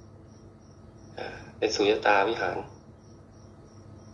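A cricket chirping steadily in the background: a thin, high chirp repeating evenly about three times a second. A man's voice speaks briefly in the middle and is louder than the chirping.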